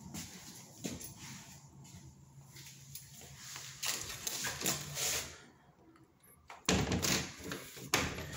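Footsteps and rustling on a hard floor, then a sudden thud near the end as a French door is handled and swung shut.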